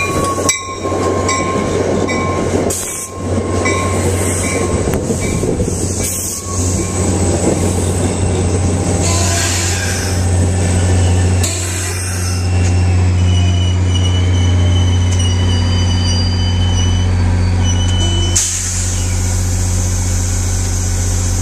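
NJ Transit commuter train rolling slowly into the station and coming to a stop: wheels clicking over rail joints in the first seconds, brakes and wheels squealing in thin high tones as it slows, over the steady low drone of the diesel locomotive pushing at the rear, which draws alongside near the end.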